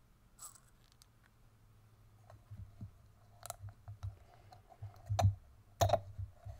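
Small clicks, taps and scrapes of e-liquid bottles and caps being handled while mixing a recipe, a few sharp clicks spread through, the loudest near the end.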